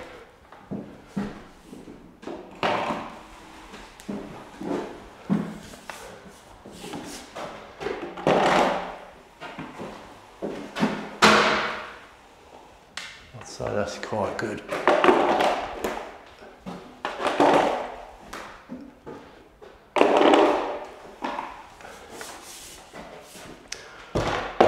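Large speed skim blade on a roller pole drawn across a wet plaster skim coat on a ceiling, flattening it: a scraping swish with each stroke, about one every two to three seconds, with occasional light knocks in between.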